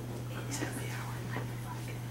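Faint, quiet talk too low to make out, over a steady low hum in the room.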